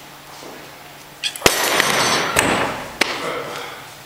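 A sharp knock, then about a second of loud clattering with two more knocks, as a metal Rolling Thunder grip handle and its loaded pin are put down at the end of a hold.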